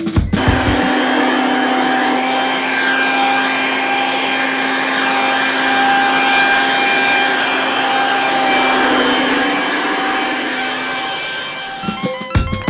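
Handheld electric tool running steadily with a constant whine, easing off near the end.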